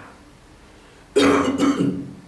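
A man clearing his throat in two short, rough bursts, starting a little after a second in.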